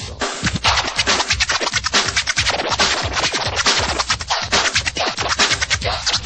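Freestyle megamix: DJ turntable scratching cut rapidly over a driving electronic beat.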